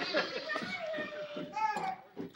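Wordless human vocalising: a voice holds one long, slightly falling note, with shorter vocal sounds around it.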